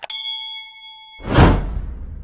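Subscribe-animation sound effect: a mouse click, then a bell ding that rings for about a second, then a whoosh just over a second in, which is the loudest part.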